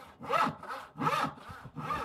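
A hand panel saw cutting down through a wooden board in long, smooth strokes. There are three strong cutting strokes about three-quarters of a second apart, with fainter return strokes between them.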